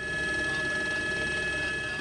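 News helicopter's cabin noise heard through its camera feed: a steady mechanical drone with a high whine held on one pitch.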